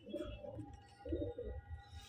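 Domestic pigeon cooing softly: a few short, low coos.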